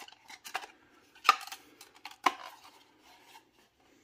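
Hard plastic toy parts clicking and knocking as a clear tinted canopy is handled and fitted onto a vintage G.I. Joe vehicle's plastic hull. Small rubbing and tapping sounds, with two sharp clicks about a second apart in the middle.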